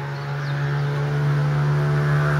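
A motor running at a steady, unchanging pitch, a droning hum that grows slowly louder.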